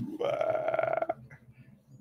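A man's voice making a single rough, croaking non-speech sound about a second long.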